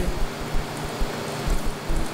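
Steady hiss of room noise with irregular low bumps and rumbles, and no speech.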